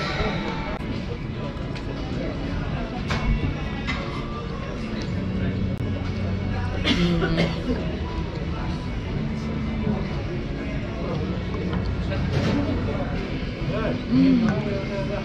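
Ambience at an outdoor café table: background music and faint voices, with a few sharp clinks of metal forks against porcelain bowls. A steady low engine hum runs through the middle.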